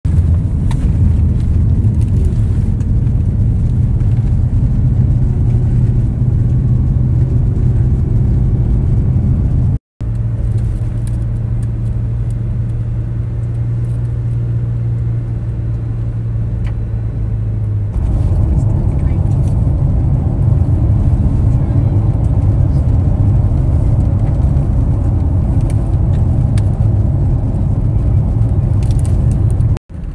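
Car engine and road noise heard from inside the cabin, a steady low hum while driving a winding hill road. It drops out briefly about ten seconds in and again near the end, and the engine note changes about eighteen seconds in.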